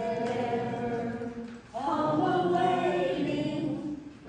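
Slow singing in long held notes, with a short break a little under two seconds in.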